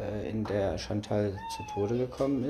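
A man's voice speaking, with a short, thin higher tone about one and a half seconds in.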